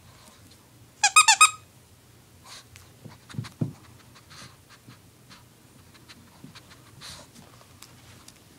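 Squeaker inside a plush ladybug dog toy squeezed in four quick squeaks, then a small dog panting with a few soft thumps and clicks of movement.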